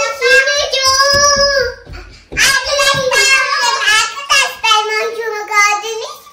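A little girl singing in a high, clear voice. She holds long notes for about the first two seconds, then moves into a quicker, more broken run of notes.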